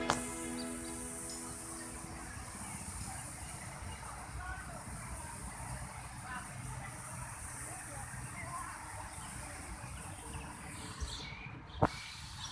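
Background music fades out over the first couple of seconds, leaving outdoor ambience: a steady high hiss with faint distant voices and traffic. A sharp click sounds near the end.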